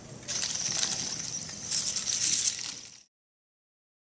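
Small electric drive motors of a Recon Scout Throwbot XT robot whining high as its wheels turn on concrete, in two spells, then cutting off suddenly.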